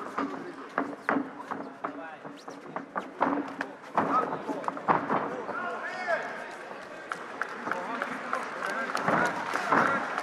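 Shouting voices from the crowd and cornermen around a cage fight, with sharp slaps of punches and kicks landing at irregular intervals.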